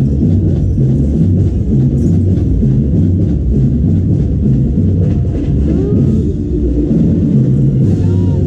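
Marching band playing loudly, with drums and percussion to the fore and a steady beat.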